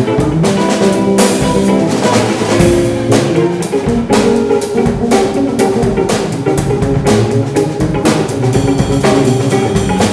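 Live instrumental band of electric guitar, electric bass and drum kit playing a jazzy groove, with busy drum and cymbal strikes over held guitar and bass notes.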